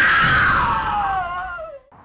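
A scream-like wail sound effect that shoots up in pitch, then slides steadily down over nearly two seconds before dying away, over a low rumble.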